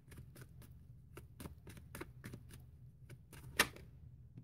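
Tarot cards being shuffled by hand, a soft, irregular run of small card clicks and flicks. There is a louder click near the end.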